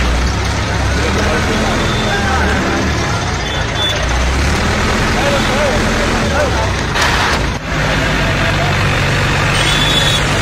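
A heavy vehicle's engine running with a steady low rumble, with voices of a crowd talking behind it. A short hiss sounds about seven seconds in.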